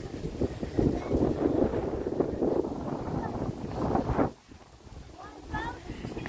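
Wind buffeting a phone's microphone, a rough, gusty rumble that cuts off suddenly about four seconds in.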